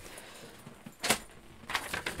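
A single short rattle or click of a small object being handled on a desk, about a second in, over faint room noise.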